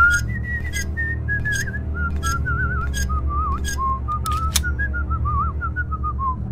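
A person whistling a wavering, warbling tune that slowly drifts lower in pitch, over background music with a low steady pulse and a light tick about twice a second.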